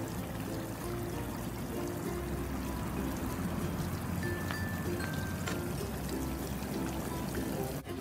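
Water jets of a hose-fed sprinkler splash pad spraying steadily and pattering down onto the plastic mat, a constant hiss of falling water, with soft background music over it.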